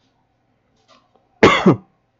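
A man coughs once, a short loud cough about a second and a half in.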